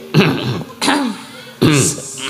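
A woman's voice through a stage microphone making three short, sharp, cough-like vocal bursts about two-thirds of a second apart, each dropping in pitch.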